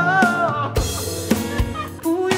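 A live pop-rock band plays: a held sung note bends and tails off about half a second in, then drum kit hits land over sustained chords.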